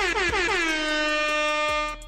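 Air horn sound effect: a string of short blasts that slide down in pitch and run together into one long held blast, cutting off just before the end.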